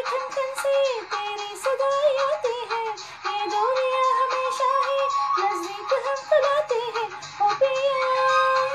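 A woman's voice singing a wordless, gliding melody in short phrases over backing music, in a Hindi film song.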